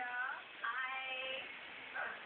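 A high voice that sounds sung rather than spoken, holding a drawn-out note for about half a second and then a longer one, with thin, narrow-band phone-microphone sound.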